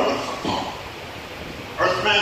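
A man's voice through a microphone: a short stretch of speech at the start, a pause of about a second, then speech resuming near the end.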